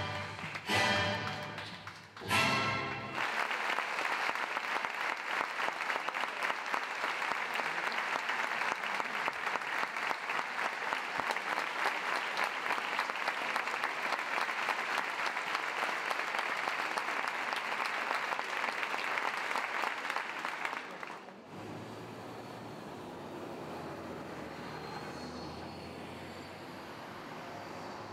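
Orchestral music ending on three loud chords, then a large theatre audience applauding steadily for about eighteen seconds. The applause cuts off abruptly, and a quieter steady background sound follows.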